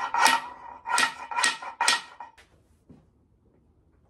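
Socket ratchet worked back and forth on a seized powerhead bolt of a two-stroke outboard, making four short ratcheting strokes about two a second that stop a little over two seconds in. The bolt is stiff and not yet coming free.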